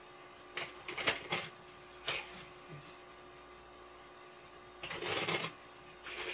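A deck of cards being shuffled by hand: a quick cluster of papery riffling rasps about a second in, a short one at about two seconds, and a longer run near the end.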